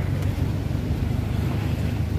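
Steady low rumble of a car engine idling close by.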